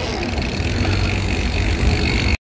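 Electric mountain bike rolling over brick paving: steady low rumble of tyres and wind on the microphone, with a faint high motor whine that grows a little louder near the end.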